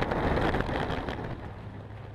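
Bobsleigh sliding fast down an ice track: runners scraping on the ice and air rushing past the onboard microphone, loudest in the first second and easing off after.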